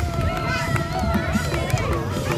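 A marching crowd: many voices calling out and chattering over one another, with music playing. A held voice-like tone runs through the first half.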